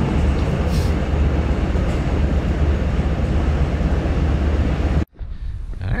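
Running noise inside a moving S-Bahn commuter train: a steady rumble with a strong low hum. It cuts off suddenly about five seconds in.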